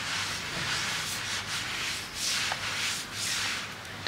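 Cloth rubbing back and forth over a tabletop in repeated swishing strokes, wiping up spilled water.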